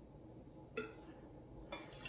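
Whiskey being poured from a glass bottle into a metal jigger: a faint pour with a light clink about three-quarters of a second in, and a small knock near the end.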